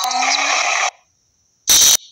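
Necrophonic ghost-box app output: chopped, noisy fragments of scanned sound. One burst lasts most of the first second, and after a short silence a louder, brief burst comes near the end.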